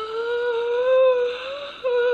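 A woman's long drawn-out wordless vocal sound, rising in pitch at the start and then held, followed by a shorter second one near the end. It acts out her shocked disgust at being splashed with dirty toilet-brush water.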